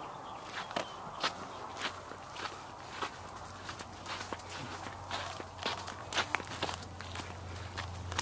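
Footsteps on dry dirt ground: a run of irregular short crunching steps. Under them is a low steady hum that grows louder from about three seconds in.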